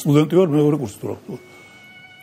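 A voice singing a short wavering phrase with music, then, about a second in, only quiet held notes of the accompaniment.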